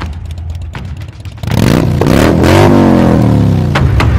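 A vehicle engine, loud, cutting in abruptly and running with a rapid rough pulse, then revving higher about a second and a half in, its pitch rising and slowly falling back.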